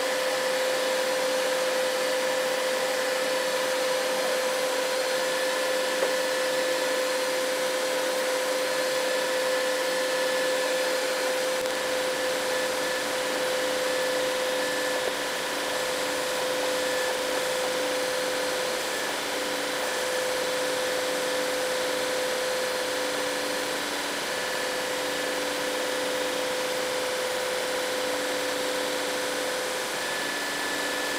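Bambu Lab 3D printer running while it prints a first layer: a steady fan whir with a constant hum, and higher motor tones that switch on and off in short stretches as the print head moves across the bed.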